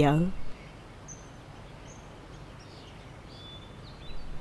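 A woman's last word at the start, then quiet background ambience with a few faint, brief bird chirps.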